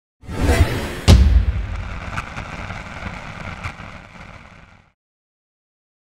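Logo sting sound effect: a short build into a loud, deep boom about a second in. A long rumbling tail follows, with a couple of fainter hits, and fades away around five seconds in.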